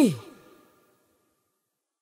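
The last sung note of a choir song slides steeply down in pitch and dies away within about half a second.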